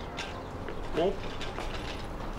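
Wheelchair rolling over paving, a low rumble with light rattling clicks. A man gives one short rising call of "hop!" about a second in.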